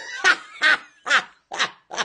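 A man laughing hard: a run of about five short bursts, roughly two a second.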